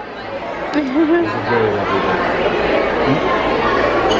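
Restaurant dining-room din: many voices chattering and overlapping, growing louder after the first second, with a short laugh near the start.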